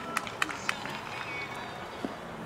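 A quick run of sharp clicks, about four a second, that stops less than a second in, over faint background voices.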